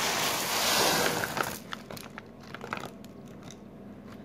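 Plastic bag of frozen peas and corn crinkling as it is tipped and the frozen vegetables pour out: a dense rustle for about a second and a half, then quieter scattered small ticks.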